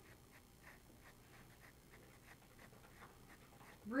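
Faint scratching of a charcoal pencil on sketchbook paper: a series of short, irregular strokes.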